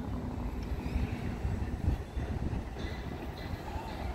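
Uneven low outdoor rumble, such as wind on the microphone and distant engines, with a faint steady engine hum that fades out about two seconds in.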